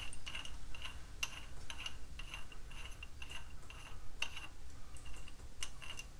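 Small metallic ticking, about three clicks a second, as a loose rear axle nut on a Ford Model A hub is spun off its threaded axle end by hand. The nut was barely tight: 'that wasn't very tight was it'.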